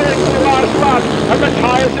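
Several 500cc sidecar racing outfits' engines running hard, a steady, many-toned drone, with a commentator's voice over it.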